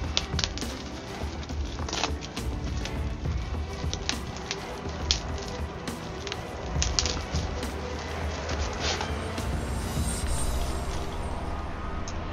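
Paper and bubble wrap crinkling and rustling as a package is unwrapped by hand, in irregular clicks and crackles.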